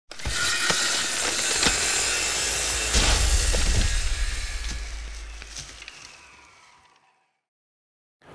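Produced logo-intro sound effect: a dense noisy rush with sharp cracks, then a heavy hit about three seconds in with a deep rumble under it, fading away to silence by about seven seconds.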